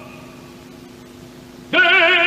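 A pause in which only a soft, steady held note of the accompaniment sounds, then about 1.7 s in an operatic tenor voice comes back in loudly with a wide vibrato, crying out 'Desdemona!'.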